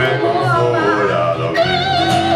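Live blues-rock music: a sung line, the voice drawn out and wavering, over electric and acoustic guitar accompaniment.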